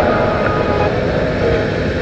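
Background music: a sustained, droning chord with a dense, hazy texture, holding steady with no beat.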